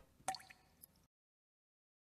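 A single drop of liquid falls with a short, ringing plink, followed by two faint ticks.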